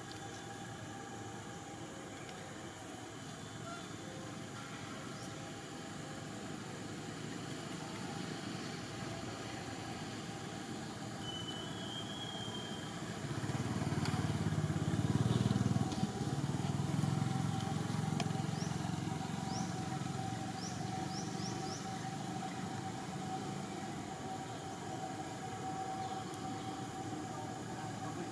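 Steady outdoor background hum, with a low engine rumble that swells about halfway through, is loudest for a few seconds and fades away, like a motor vehicle passing out of sight.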